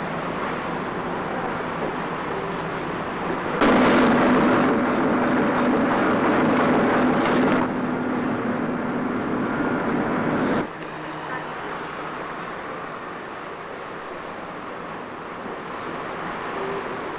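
A ship's steam whistle sounding one long blast of about seven seconds: it starts suddenly a few seconds in on one steady low note with a hiss of steam, eases slightly partway through and cuts off abruptly, over a steady background noise.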